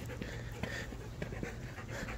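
A dog panting, faint and steady.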